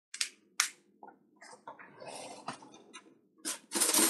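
Tableware being handled: two sharp clicks, then scattered knocks and rustling, and a louder clatter of about a second near the end.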